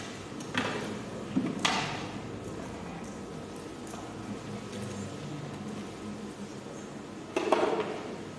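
A few short knocks and clatters from a man sitting down at a desk and handling things on it: one about half a second in, two close together around a second and a half in, and a louder one near the end, over a steady low room hum.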